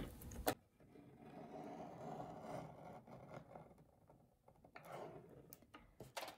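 Guillotine paper trimmer blade pressed slowly down through a sheet of vellum: a faint, soft cutting scrape that comes and goes, after a light click about half a second in.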